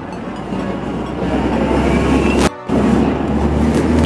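City street traffic: a steady low rumble of passing vehicles, cut off briefly about two and a half seconds in and then resuming louder.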